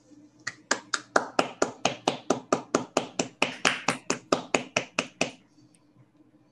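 Hand clapping from one or a few people, about five sharp, separate claps a second, beginning about half a second in and stopping about five seconds in.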